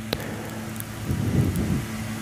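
Outdoor market background: a steady low hum under a noisy haze, with a click just after the start and faint voices about halfway through.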